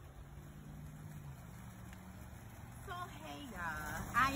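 Low, steady outdoor rumble with a faint hum, then a woman begins speaking about three seconds in.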